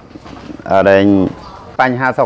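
A man's voice in conversation: one drawn-out, low-pitched syllable about a second in, then speech picks up again near the end.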